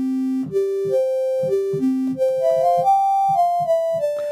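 Software synthesizer playing a short melody of about a dozen single notes that step up and then back down in pitch, the first one held about a second. Each note is voiced by a sine oscillator layered with a quieter sawtooth oscillator transposed a fifth above, so every note sounds as an open fifth.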